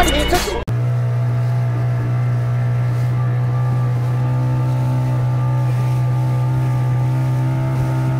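A small motorboat's engine running at a steady, unchanging pitch under way at speed, with water rushing past the hull. It cuts in abruptly under a second in, replacing a brief tail of intro music.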